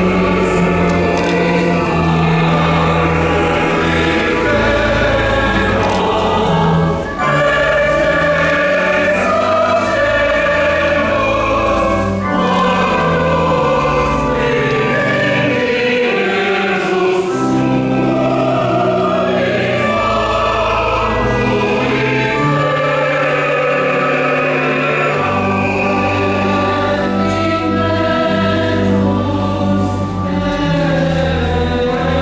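Choir singing a processional hymn over sustained organ accompaniment, with the low bass notes held and changing step by step.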